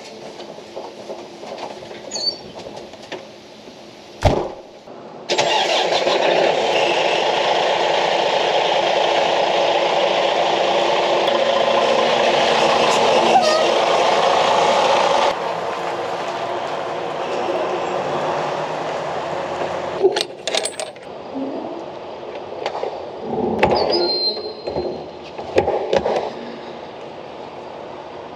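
A single thump, then a semi truck's diesel engine running loud and steady for about ten seconds before cutting off suddenly. Afterwards come a few scattered knocks and metallic clanks.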